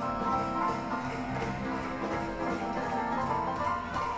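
Live small-band swing jazz with piano, upright bass and drums playing together.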